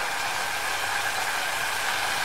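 Steady hiss of thick mango jam cooking in a steel saucepan over a high flame.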